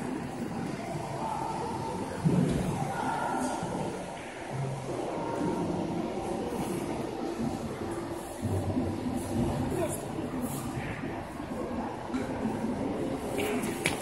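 Indistinct murmur of voices over general background noise in a large indoor hall.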